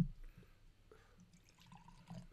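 A glass bottle set down on a wooden table with a single dull thump at the very start, followed by faint handling sounds and quiet room tone.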